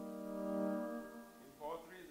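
Keyboard holding soft, sustained organ-like chords that swell and then fade away about a second in. A short wavering sound follows near the end.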